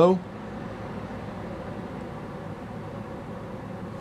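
Rabbit Air A3 air purifier's fan running steadily one step below its turbo setting: an even rush of moving air with a faint steady hum, noticeably quieter than turbo.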